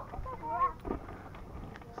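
A child's short, faint, wavering vocal sound, followed about a second in by a single soft knock, on a backyard trampoline.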